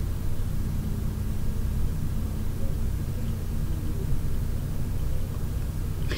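Steady low background rumble with a faint hum, unchanging throughout.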